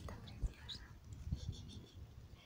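A person whispering softly, with a short low knock about half a second in.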